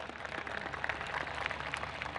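Large audience applauding steadily: many hands clapping at once.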